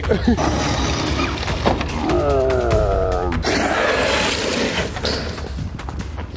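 Traxxas X-Maxx electric RC monster truck running hard on gravel, its brushless motor whining in gliding pitches, with tyre and gravel noise and a thud as it hits a dumpster.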